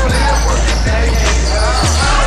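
Music with a heavy bass and a kick-drum beat about every half second, and a vocal line over it.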